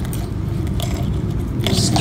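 A metal wire scraping and clicking lightly against a glass jar as it stirs a mass of drowned Japanese beetles in water, a few short scratchy strokes over a steady low rumble.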